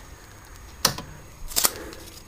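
Two sharp clicks, the first a little under a second in and the second near the end, over a low steady hiss with faint scattered ticking.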